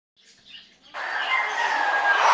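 Bird calls, faint at first and then loud from about a second in.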